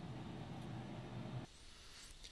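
Faint steady room tone and hiss, dropping to near silence about one and a half seconds in.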